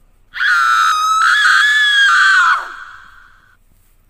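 A loud, high-pitched scream that breaks off briefly once and is held for about two seconds, then drops in pitch and dies away with a fainter trailing tail.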